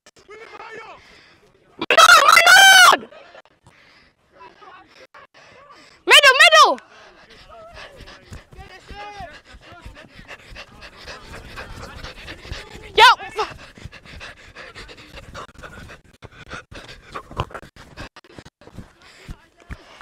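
Loud shouts across a football pitch: a long wavering call about two seconds in, a shorter falling one about six seconds in and a brief one near thirteen seconds. Between them, fainter distant voices and scuffs from play.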